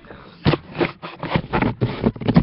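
A rapid, irregular run of scrapes and knocks from craft materials being handled, starting about half a second in.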